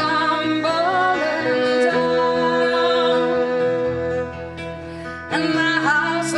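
Live acoustic band music: a woman singing long held notes over guitar and violin. The music drops quieter for about a second near the end, then comes back in with strummed guitar.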